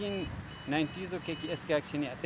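A man speaking. Behind his voice a thin, steady high-pitched beep sounds in two stretches, the second lasting about a second.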